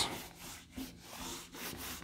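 Handheld whiteboard eraser rubbing back and forth over a whiteboard, wiping off marker writing in a quick series of scrubbing strokes.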